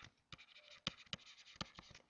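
Stylus nib scratching and tapping on a pen tablet while handwriting a word: a faint run of light scratches and sharp little clicks.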